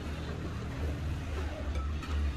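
Steady low background rumble with faint, indistinct room noise.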